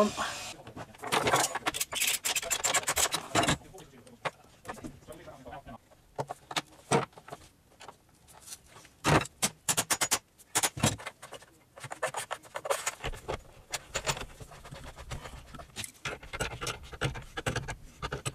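Plastic underfloor heating pipe being handled and fitted onto the connectors of a heating manifold: rustling and scraping with irregular clicks and knocks, quieter for a few seconds in the middle.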